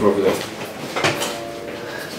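A rolling suitcase being handled: a single short clack about a second in, followed by faint steady tones.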